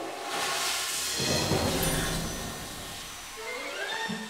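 Cartoon toilet flushing: a rushing whoosh of water lasting about three seconds, with a rising tone sweeping up near the end.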